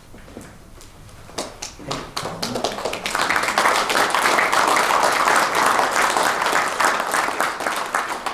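Audience applauding: a few scattered claps about a second and a half in, swelling into full, dense applause about three seconds in.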